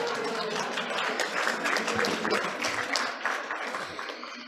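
A room full of people clapping and laughing, the applause dying away near the end.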